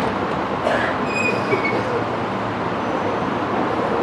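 Steady background din of noise with no voice, and a faint brief high chirp about a second in.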